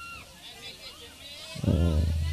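Mostly voices: scattered audience and children's voices, then, about a second and a half in, a loud voice comes through the stage PA with a low hum from the sound system.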